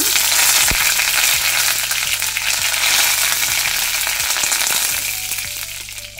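Fresh curry leaves spluttering and sizzling in hot oil in a kadai with cumin seeds and dried red chilli: the tempering (tadka) step of cooking. It is loud and steady, then dies down over the last second as the moisture on the leaves boils off.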